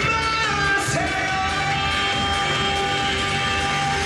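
A male singer sings a Korean trot song live into a microphone over a backing track with a steady beat, holding a long note from about a second in.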